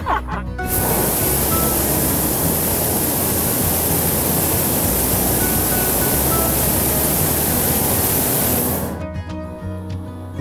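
Hot air balloon's propane burner firing in one long blast of about eight seconds: a loud, steady hiss that starts abruptly about a second in and cuts off shortly before the end.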